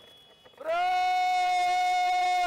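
A horn, such as a parade bugle, sounds one long, steady note that starts about half a second in and is held.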